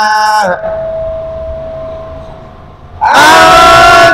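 Unaccompanied male voice chanting an Arabic devotional poem. A held sung note ends about half a second in. A faint steady tone lingers through a pause of about two and a half seconds, then the voice comes back loudly on a long held note.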